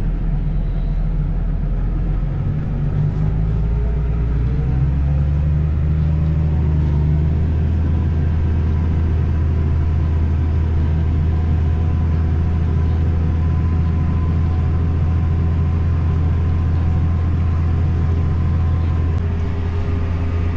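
Case Puma 155 tractor's six-cylinder diesel engine pulling a seedbed cultivator through the soil. The engine note rises over the first few seconds as the tractor gets under way, then runs steadily under load.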